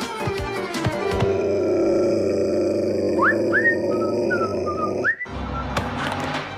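Cartoon soundtrack: a few quick knocks, then a sustained drone of music with a string of short rising whistle-like slides, which cuts off abruptly about five seconds in.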